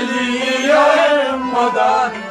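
Men singing a Kashmiri Sufi song in a long, held, chant-like phrase, over a steady low beat about twice a second.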